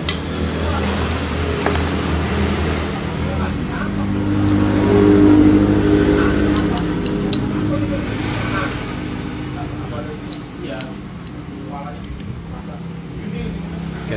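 A steady engine hum from a nearby vehicle, swelling in the middle and then easing off, with a few light metallic clinks of motorcycle drum brake parts (brake shoes and backing plate) being handled.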